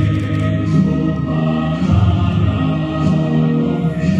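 A hymn sung by many voices together, in long held notes over instrumental accompaniment.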